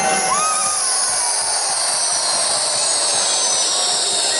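A stadium crowd releasing thousands of jet balloons at once: a dense, steady hiss and whistle of air rushing out of the balloons, with a few single whistles gliding in pitch.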